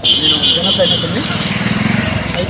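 A motor vehicle engine running close by, its low pulsing note rising slightly from about a second in. A high steady tone sounds over the first second, with crowd voices behind.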